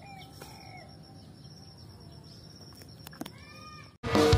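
Faint outdoor ambience in a rural field: a steady high insect drone, a few short arching bird calls such as a chicken's, and a couple of clicks a little after three seconds in.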